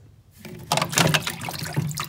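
A hand splashing and sloshing through meltwater inside a YETI Tundra cooler, starting about half a second in. The three bags of ice have fully melted to water.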